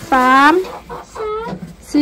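A hen clucking once, briefly, about a second in, between spoken counting words.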